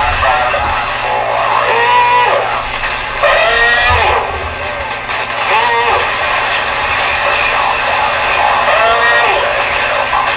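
Voices of distant stations coming in over a CB radio receiver, heard in short stretches over steady band noise with a constant low hum.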